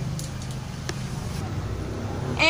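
A steady low rumble with about three light clicks in the first second.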